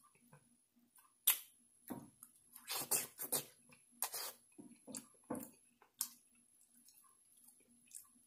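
Close-up mouth sounds of a boiled potato being chewed: a series of short, irregular wet smacks and clicks with quiet gaps between them.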